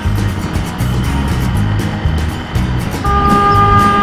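Background music with a steady bass beat over road and traffic noise. About three seconds in, a vehicle horn sounds one steady note for about a second, a warning at a car that has moved into the rider's lane without looking.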